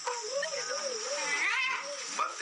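A wavering, cat-like pitched cry that warbles up and down about four times a second, ending in a short rising-and-falling call near the end.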